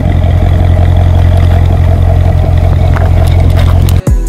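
Chevrolet Corvette V8 engine idling with a loud, steady, deep exhaust note. It cuts off abruptly at the end.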